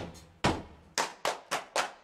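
Rhythmic hand clapping: a short clapped pattern of about six sharp claps, spaced more closely in the second second.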